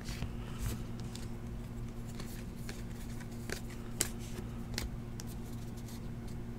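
Donruss Optic basketball trading cards being handled and sorted by hand: light flicks, slides and taps of card stock, the sharpest tap about four seconds in, over a steady low hum.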